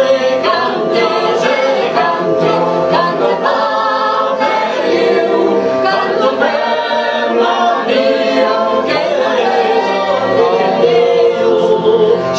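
A woman's and a man's voices singing together over a steady, unbroken drone from a keyed string instrument.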